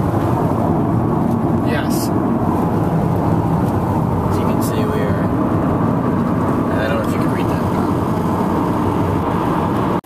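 Steady road and engine noise inside a car cruising at highway speed, a loud low rumble and hiss from the tyres and engine.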